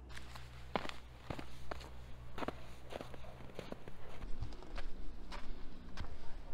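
A hiker's footsteps on a snowy trail, a step about every half second.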